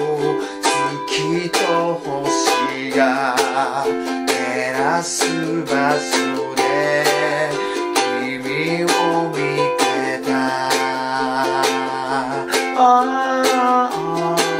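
Ukulele strummed in steady chords while a man sings a melody along with it. The chords are C and Em7, then F and G7.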